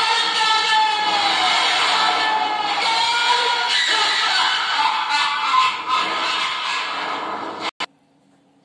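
An old film song playing through computer speakers, a singing voice with long gliding notes over orchestral accompaniment. It cuts off suddenly shortly before the end, leaving only a faint hum.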